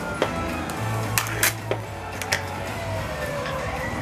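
Soft background music with a steady low bass runs throughout. Over it come a few short, sharp crinkles and clicks as a foil-wrapped miniature toy is unwrapped and its plastic capsule is handled.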